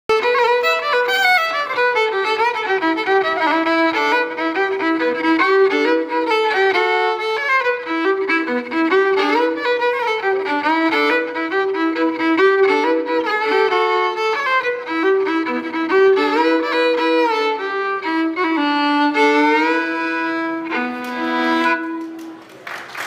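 Solo fiddle playing a fast Celtic tune in quick runs of bowed notes. Near the end it moves to long held notes and closes on two strings sounding together.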